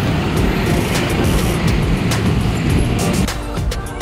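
Street traffic noise, with motorcycles passing close by, under background music. The rumble drops away about three seconds in, leaving the music clearer.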